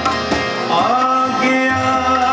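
A ghazal performed live, a man singing in long gliding phrases over harmonium, with tabla strokes near the end.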